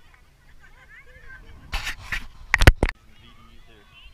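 Handling noise right at the camera microphone: a brief rustle about halfway through, then three sharp knocks in quick succession, over faint distant voices.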